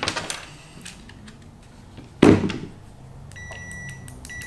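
Klein clamp meter's continuity beeper giving a steady high beep that cuts in and out as the test-lead tips are touched together, starting a little over three seconds in. The gaps are the meter failing to keep up. A single loud thump comes about two seconds in.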